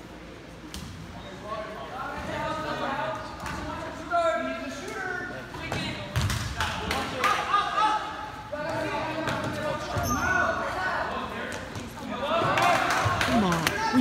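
Basketball bouncing on a gym floor, with a run of several bounces about six to eight seconds in, while players' and spectators' voices call out across the court in a large gym.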